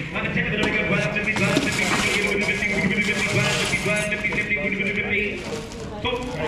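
Several people talking indistinctly at once in a large hall, with a stretch of rustling and clatter from about a second and a half to four seconds in as lots in cardboard boxes are handled.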